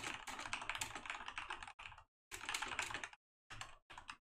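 Typing on a computer keyboard: rapid runs of key clicks in several bursts, with short pauses between them.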